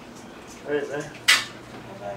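A short vocal sound, then a single sharp, ringing clink of a hard object a little past halfway, over a low steady room hum.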